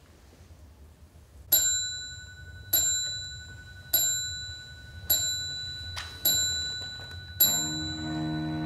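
A small bell-like metal tone struck six times at an even pace, about a second apart, each stroke ringing on the same high pitch and dying away. Near the end a sustained low chord from the chamber ensemble begins.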